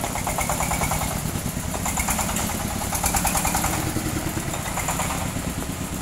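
The diesel engine of a mobile circular-sawmill rig, running steadily with an even, rapid beat as the rig drives, while rain hisses down.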